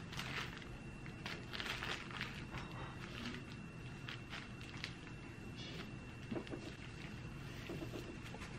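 Faint, irregular rustling of hair and the fabric sleeve of a Waveformer curler as a hair section is drawn through it by hand.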